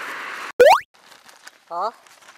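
A short, loud cartoon-style 'boing' sound effect that sweeps quickly upward in pitch, laid in at an edit. Just before it, road and traffic hiss cuts off abruptly.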